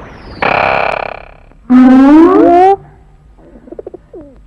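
Comedy sound effects: a hissing whoosh with a falling whistle about half a second in, then a loud electronic tone that rises and wavers for about a second. Faint rapid ticks follow near the end.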